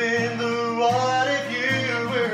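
Acoustic guitar strummed in a steady rhythm, with a man's voice singing long, sliding notes without clear words over it.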